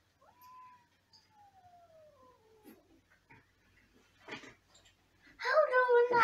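Cats meowing at a window: a faint, long meow falling in pitch in the first few seconds, a light knock, then a loud, drawn-out meow starting near the end.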